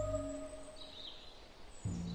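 Ambient music whose held tones fade out in the first half, leaving a quiet stretch with a short bird chirp about a second in; a new low note of the music comes in near the end.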